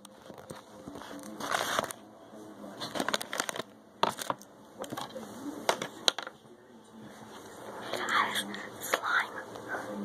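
Irregular close-up crinkling and crackling with scattered sharp clicks.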